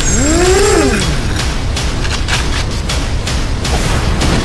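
Trailer score and sound design: a heavy low rumble with a run of sharp percussive hits, about three a second, and a tone that swoops up in pitch and back down within the first second.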